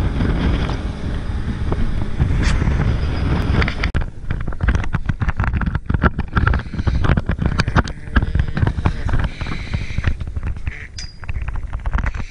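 Wind buffeting the camera microphone over the low rumble of a dive boat under way. About four seconds in the sound cuts to gustier, uneven wind noise with many short knocks and clatters on deck.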